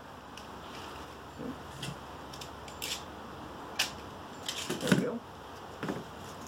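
Adhesive tape being pulled from the roll and torn, in a series of short crisp rips, with light handling knocks as a foam pommel cone is taped onto a boffer core.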